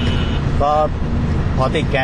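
Steady low engine and road rumble inside the cabin of a Mitsubishi 2.5-litre pickup cruising on a highway, under a man's speech.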